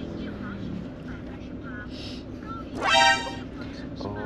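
A horn sounding once, briefly, about three seconds in, over the steady low hum of a car's cabin.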